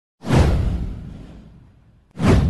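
A cinematic whoosh sound effect with a deep low boom underneath, starting suddenly about a fifth of a second in, sweeping down in pitch and fading out over about a second and a half.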